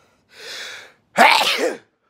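A man, sick, sneezing once: a breathy intake of breath, then a loud sneeze about a second in.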